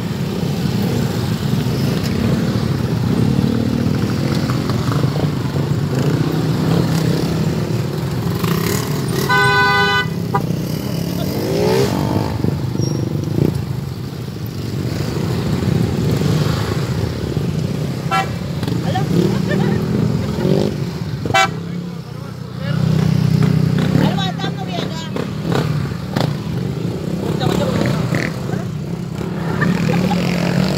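A group of scooters and small motorcycles riding past at low speed, engines running steadily. A horn toots once for about a second about ten seconds in, and a few shorter horn beeps follow in the second half.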